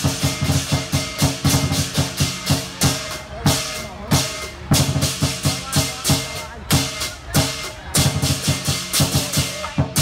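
Lion dance percussion: a big drum beating a fast, driving rhythm with crashing cymbals and a ringing gong, about three strokes a second, with a brief break about four seconds in.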